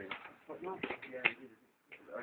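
Indistinct talking voices, with a couple of short sharp sounds about a second in, fading to a brief lull near the end.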